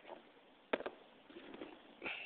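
Close handling sounds of small plastic meters and sample gear: light taps and rustles, with one sharp double click about three-quarters of a second in.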